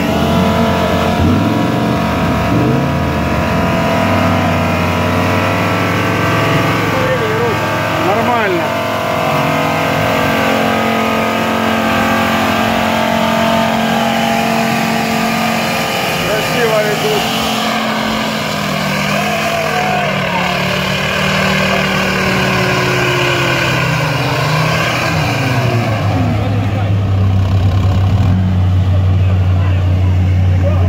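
Off-road 4x4 engines running hard under load, revving up and down, as two vehicles climb through mud coupled together, one towing the other.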